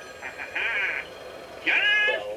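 A telephone ringing with a rapid trill for most of a second, then a short, high sound rising in pitch near the end.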